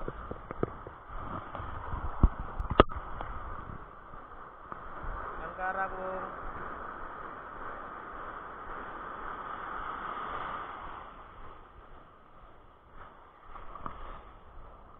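Surf washing and churning around the wader as a steady rush of water, easing off in the last few seconds. A few sharp knocks stand out in the first three seconds.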